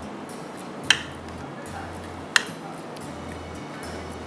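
Metal tongs clinking twice against a metal baking tray while tossing chicken pieces and vegetables, over soft background music.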